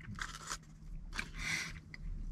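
Soft, faint chewing of a mouthful of burger close to the microphone, with a few brief wet crunches and a longer one about a second and a half in, over a low steady hum.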